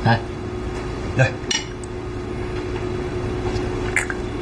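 A few short clinks of small porcelain wine cups and tableware on a wooden table as two drinkers toast and drink, over a steady faint hum.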